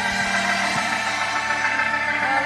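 Live worship music: an organ holding sustained chords in a short gap between sung phrases.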